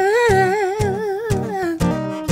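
Live acoustic song: a man's voice holding one long sung note with a wavering vibrato, sliding down near the end, over strummed acoustic guitar.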